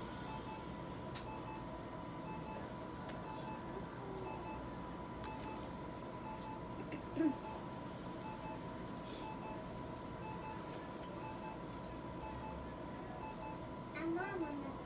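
Faint electronic beeping that repeats about twice a second over a steady high-pitched hum, with one brief wavering squeak about seven seconds in.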